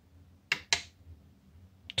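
Two quick clicks from pressing the SLOT button on an Opus BT-C3100 battery charger, about a quarter second apart, selecting the charger's slots.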